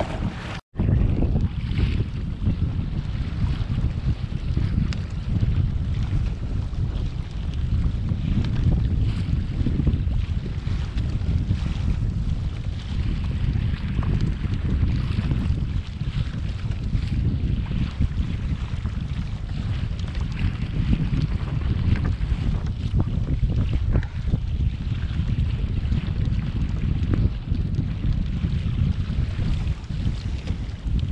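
Gusty wind buffeting the camera microphone in a heavy, uneven low rumble, over water washing against a sailing kayak's hull. The sound drops out for an instant about a second in.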